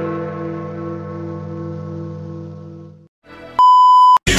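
A sustained electronic chime chord, the kind of jingle that goes with a computer logo, holds steady with one gently pulsing note and fades away about three seconds in. Shortly after, a loud, steady, high single-pitched beep tone starts near the end.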